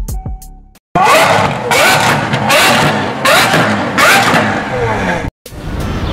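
A closing music phrase fades out, then a high-performance car engine revs hard several times in quick succession, each rev a loud rising sweep, until the sound cuts off suddenly near the end.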